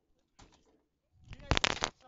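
Blows landing on a car's already-shattered windshield, heard from inside the cabin: a quick run of sharp knocks about one and a half seconds in.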